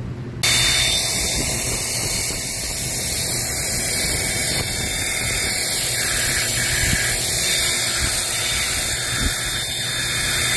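Worx 40V Hydroshot battery-powered pressure washer spraying a jet of water onto a solar panel's glass: a loud, steady hiss that starts suddenly about half a second in, over a steady low hum.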